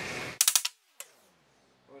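A quick cluster of three or four sharp metal strikes, then one more about half a second later: hammer blows straightening a bent steel pin at a bench vise.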